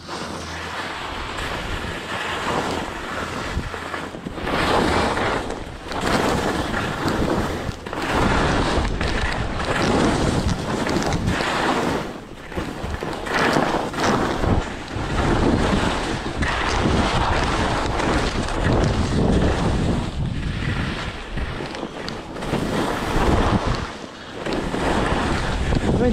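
Wind rushing over the helmet camera's microphone, mixed with skis scraping and hissing over snow. The noise swells and dips every couple of seconds with the turns.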